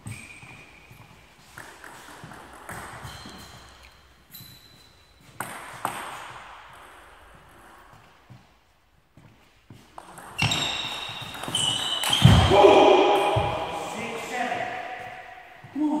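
Celluloid-type table tennis ball clicking on the table and bats, with sharp clicks scattered through the first half. About ten seconds in, a louder stretch of voices rises over the ball hits and runs for several seconds.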